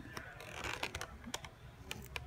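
Small irregular clicks and ticks of a carded action figure's plastic blister pack and cardboard backing being handled and turned over in the hand.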